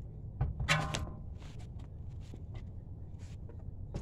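Alloy wheel and tyre being pulled off a car's rear hub by hand: a brief pitched sound about a second in, then scattered light knocks and scrapes, with a sharper knock near the end as the wheel comes away.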